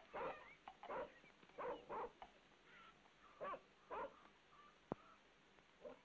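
A dog barking faintly in short, separate barks, some in quick pairs, with a single sharp click a little before the end.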